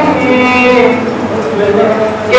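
Men chanting a noha, a Shia lament, through a microphone and PA, drawing out long held notes; the phrase eases off in the second second.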